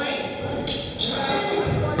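Basketball game sounds in a school gymnasium: background voices of players and spectators, with a basketball bouncing on the hardwood floor.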